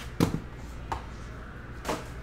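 Cardboard trading-card hobby box being handled and put down on a table: a sharp knock just after the start, a faint tick about a second in, and a louder knock near the end.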